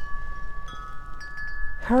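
Metal wind chimes ringing in gusty wind, several clear tones struck at different moments and overlapping as they sustain, over a low wind rumble.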